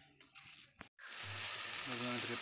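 Prawn masala sizzling in a kadai over a wood fire. The sizzle cuts in suddenly about a second in, after a faint stretch, and runs on as a steady loud hiss.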